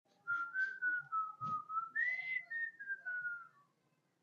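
A man whistling a short tune through pursed lips: a string of short notes that jumps to a higher pitch about halfway, then slides gradually down and fades out.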